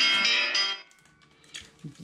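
An alarm tone playing a short tune of steady notes that stops about a second in. The alarm is set to announce that new diamond-painting kit releases are out.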